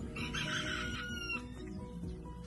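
A rooster crowing once, one call of about a second, over background music.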